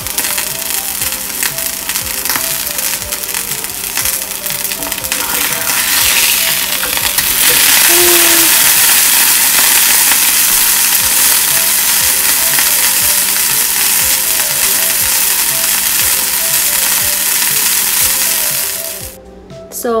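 Beef steak frying in oil in a cast iron skillet: a dense crackling sizzle that grows louder and steadier about seven seconds in and stops shortly before the end. Faint background music with a repeating melody runs underneath.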